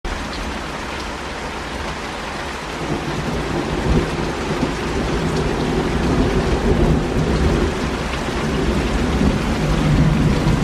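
Heavy rain pouring onto leaves, potted plants and waterlogged pavement in a thunderstorm. A low rumble of thunder builds about three seconds in and rolls on under the rain.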